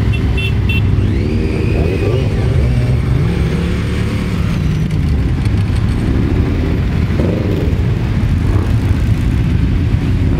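A column of many motorcycles riding off at low speed, their engines running together in overlapping passes, with individual bikes' pitch rising as they pull away.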